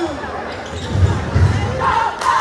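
Basketball dribbled on a hardwood gym floor: two heavy bounces about a second in, over spectator chatter.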